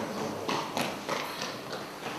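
A few faint, irregular clicks over quiet room tone.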